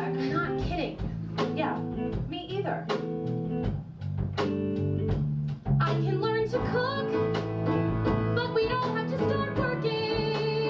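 Live song from a small band with guitar, bass and drums under a woman's singing voice. About six seconds in the music grows louder and fuller, with long held notes.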